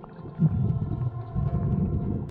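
Low underwater rumble of a scuba diver's exhaled bubbles venting from the regulator, heard through the camera housing underwater, starting about half a second in.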